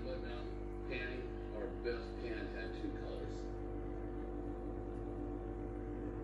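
Faint, indistinct voices over a steady low hum made of several tones; the voices stop about three seconds in, leaving only the hum.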